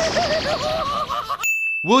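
A cartoon character screaming, its pitch wavering and rising, cut off about one and a half seconds in by a single short, high bell-like ding: the sin-counter chime marking one more sin added to the count.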